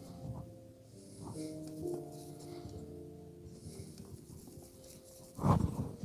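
Faint background music of soft, sustained notes. A brief louder noise comes near the end.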